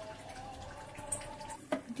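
Faint bubbling of a curry simmering in a covered aluminium pot on low flame, with a single sharp click near the end.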